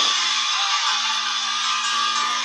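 The held closing note of a song by a children's choir with a backing track, a steady tone after the guitar accompaniment drops away.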